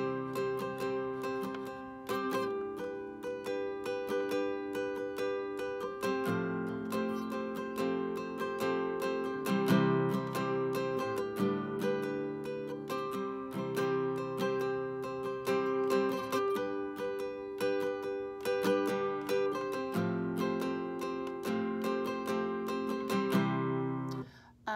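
Classical guitar with a capo at the fifth fret, strummed in a steady down-up pattern and switching chords every few seconds.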